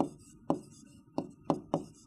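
Pen tapping against a writing board as it is set down for each stroke of handwriting: five sharp taps at uneven spacing.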